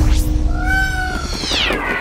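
Logo-intro sound effect: a deep low drone under a pitched tone that swells, then slides steeply down in pitch near the end.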